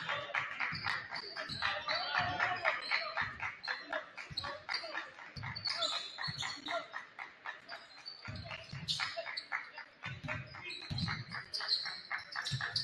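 Basketball being played on a hardwood gym floor: the ball bouncing in irregular low thumps, short sharp squeaks and scuffs from sneakers, and voices of players and spectators throughout.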